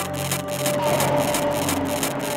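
Intro of a hardcore electronic track: a dense, noisy sound-design texture over a low held drone and a steady higher tone, with no beat. The low drone fades in the second half.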